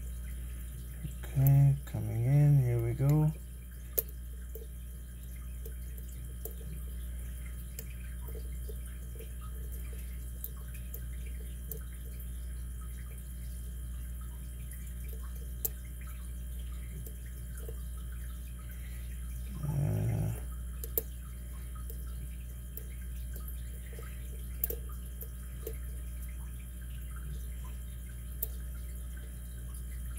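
Faint, scattered ticks and clicks of a lock pick and tension wrench working the pins of a pin-tumbler lock, over a steady low hum. A man's voice murmurs briefly near the start and again about two-thirds of the way through.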